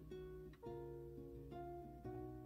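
Soft background music of plucked strings, guitar-like, playing a gentle melody with a new note or chord about every half second.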